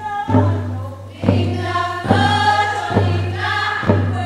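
A women's choir singing together over a hand-held frame drum struck in a slow, even beat, a little more than one stroke a second.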